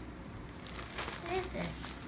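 Faint crinkling of a clear plastic bag around a fleece blanket as a hand presses and handles it. A short vocal sound from a child comes a little past halfway.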